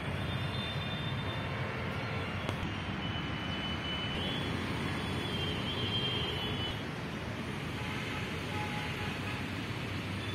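Steady outdoor background rumble of an urban park, a low even wash of distant city noise such as traffic. Faint short high whistles sound over it around the middle.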